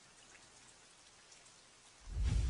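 Near silence: a faint, even hiss with light scattered crackle, slowly growing.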